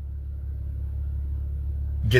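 Low, steady rumble of a car's running engine, heard from inside the cabin.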